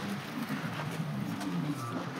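Faint background talk from people nearby, with a few light knocks.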